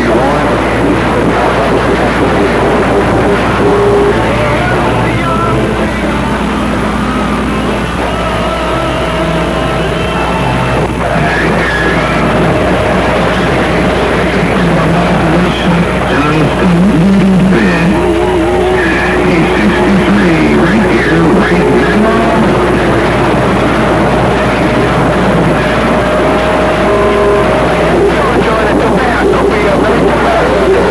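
CB radio speaker receiving skip: several distant stations keying up over one another, a jumble of garbled voices with steady carrier whistles and a constant static hiss, and music mixed in.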